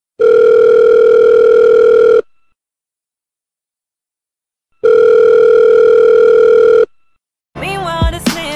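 Telephone ringback tone of a call ringing out: two long, steady, loud electronic tones of about two seconds each, separated by a pause of about two and a half seconds.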